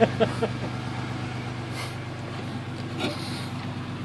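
A car engine idling steadily, running again after its fuel pump was replaced. A few light clicks come at the start and one about three seconds in.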